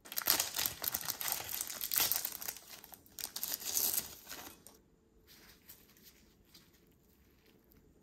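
Foil candy wrapper crinkling as it is opened and the sour paper candy strip is pulled out: dense crackling for about four and a half seconds, then only a few faint soft ticks.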